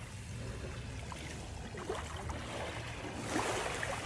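Seaside ambience: a steady low wind rumble on the microphone with a faint wash of surf that swells a little near the end.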